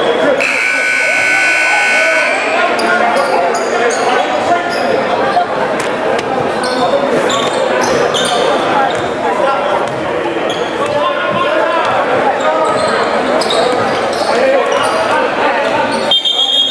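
Gym buzzer sounding for about two seconds near the start, then a steady crowd murmur in a large echoing gym, with a basketball being dribbled and short squeaks from sneakers on the hardwood floor.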